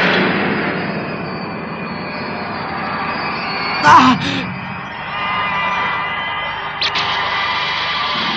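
Anime sound effect: a sustained rushing whoosh for two players colliding shoulder to shoulder. A man cries out about four seconds in, and a couple of sharp knocks come near the end.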